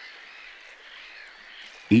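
Faint outdoor wetland ambience with small distant bird chirps, and a man's narrating voice starting at the very end.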